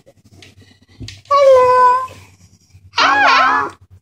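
Two wordless, high-pitched cries from a young child, meow-like: a held, steady one about a second in, then a shorter one that wavers in pitch near the end. A soft knock comes just before the first.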